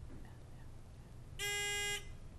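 Quiz-bowl buzz-in buzzer: a steady electronic tone sounds about one and a half seconds in and lasts about half a second. It signals a contestant buzzing in to answer.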